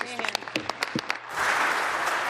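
Applause from members of a legislative chamber: a few separate claps at first, then about a second and a half in, many people clapping at once in a dense, steady patter.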